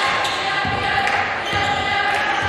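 A basketball being dribbled on a hardwood gym floor, about three bounces half a second apart, with voices in the background.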